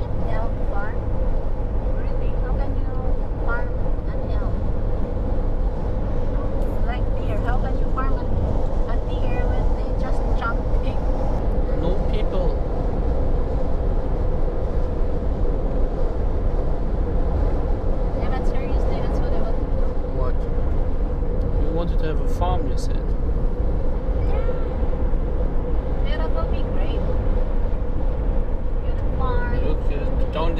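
Steady road noise from a car driving at highway speed, heard from inside the cabin: a constant low rumble of engine and tyres with a steady hum. Snatches of faint voices come and go over it.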